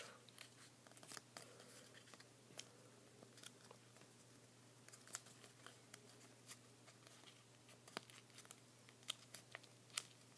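Faint, scattered crinkles and ticks of a small folded paper model being creased and pressed between the fingers.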